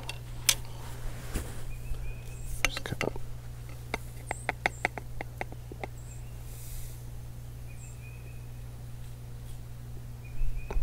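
Light metallic clicks and clinks of a brass powder measure being handled against a musket barrel, with a quick run of about ten clicks, about five a second, near the middle. Small birds chirp faintly over a steady low hum.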